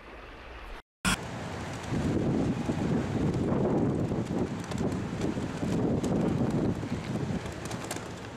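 Strong wind buffeting the camera microphone in gusts, starting about a second in after a brief cut-out and click.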